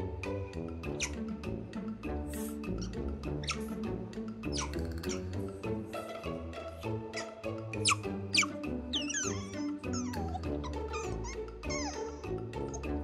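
Background music with short, high-pitched squeaks and chirps from an Asian small-clawed otter, scattered through; the loudest come about eight seconds in, followed by a run of falling chirps.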